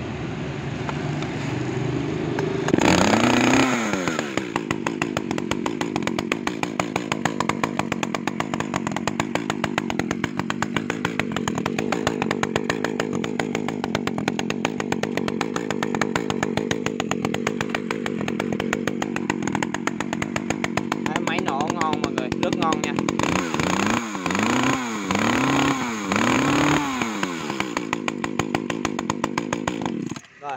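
Ryobi ES-3035 30 cc two-stroke chainsaw running at idle on a test start. It is revved once about three seconds in and blipped three times near the end.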